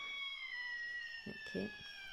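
A long, high whistle-like tone, sliding slowly down in pitch, under a brief spoken word near the end.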